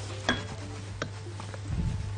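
A metal utensil clinks against a cooking pot with a short metallic ring. A lighter click follows about a second in, and a duller knock comes near the end.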